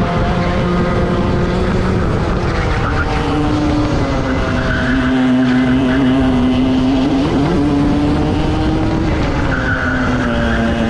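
Onboard sound of Rotax two-stroke racing kart engines at race pace, the note shifting higher about three seconds in and wavering briefly around seven seconds. Tyres scrub in the corners, most around five seconds and near the end.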